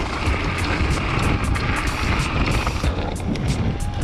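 Wind buffeting the microphone and the rattle of a trail mountain bike riding down a rough, rocky trail, with many small knocks. Background music plays underneath.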